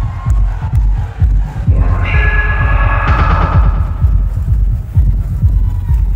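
Loud electronic dance music (future rave) with a heavy, fast-pulsing bass. A bright synth chord comes in sharply about two seconds in and fades away over the next couple of seconds.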